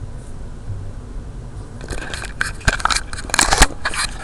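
Handling noise from the camera being picked up and moved: rustling and scraping on the microphone with a few sharp knocks, starting about two seconds in after a stretch of low steady room noise.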